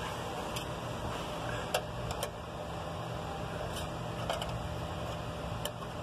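A steady mechanical hum, with a handful of faint, sharp clicks from a long screwdriver being worked against the radio unit's metal bracket and plastic dash trim.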